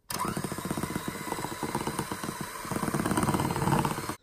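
Electric hand mixer switched on just after the start, its motor running steadily as the twin metal beaters whisk thick cake batter in a glass bowl, a little louder near the end.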